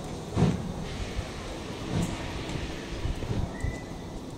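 Exhaust beats of GWR Castle Class no. 4079 Pendennis Castle, a four-cylinder steam locomotive: slow, heavy chuffs about a second and a half apart as it works away from a standstill.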